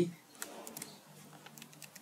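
A few faint computer keyboard keystrokes, mostly in the first second, as code is typed.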